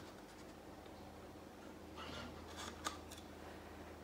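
Faint handling sounds of plastic paint cups over quiet room tone: a couple of soft rustles and a small sharp click about three seconds in, as paint cups are moved and poured from.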